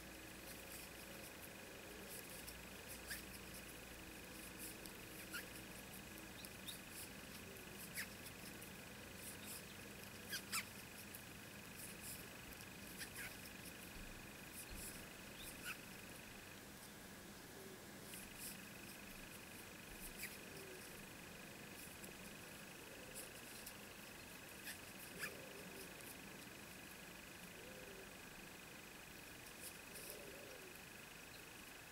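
Faint small clicks and ticks at irregular intervals as a steel crochet hook works fine cotton thread through the stitches, over a steady faint high-pitched whine.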